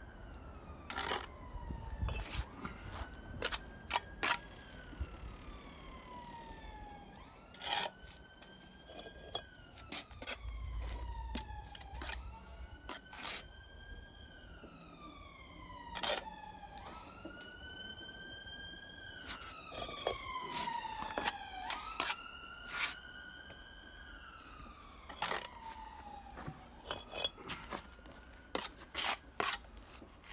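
An emergency-vehicle siren wailing, its pitch rising quickly and falling slowly in repeated cycles a few seconds long. Over it come sharp clinks and scrapes of a steel bricklaying trowel on bricks and mortar, the loudest sounds.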